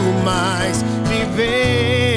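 A man singing live over strummed acoustic guitar, holding long notes that waver in pitch.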